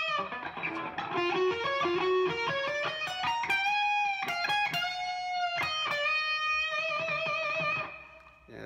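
Electric guitar playing a neo-classical metal lead lick: a quick run of single notes climbing in pitch, with string bends and held notes. It opens and ends on long notes shaken with wide vibrato.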